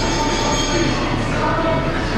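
Background music with held chords that change about every second and a half.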